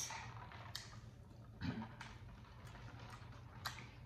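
Quiet eating sounds: a few scattered faint clicks and mouth noises from soup being spooned and eaten, over a steady low room hum.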